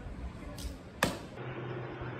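A brief swish about half a second in, then a single sharp thwack about a second in, over a faint outdoor background.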